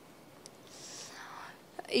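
A faint breath drawn into a handheld microphone, a soft hiss about a second long, with a small click just before it.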